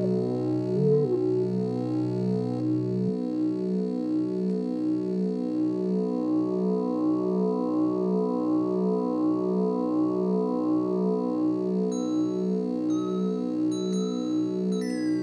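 Electronic synthesizer music from a Korg Kaossilator and a Teenage Engineering OP-1: a held, pulsing drone of stacked tones. A low bass note drops out about three seconds in, and short high beeps come in near the end.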